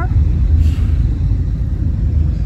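Steady low rumble of a car in motion, heard from inside the cabin: engine and road noise.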